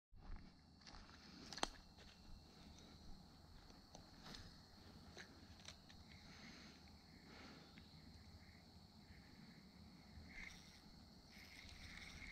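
Near silence: faint footsteps and rustling in grass, with a few light, scattered clicks.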